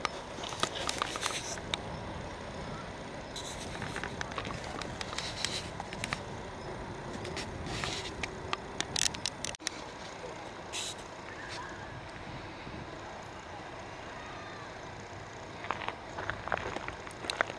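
Outdoor ambience: a steady background hum with indistinct voices and scattered sharp clicks and crackles. The sound drops out for a moment a little past the middle.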